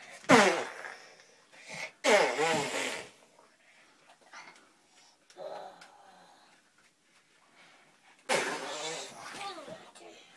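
Young children making wordless roaring, growling play noises in four bursts. The first slides steeply down in pitch, and the third is quieter.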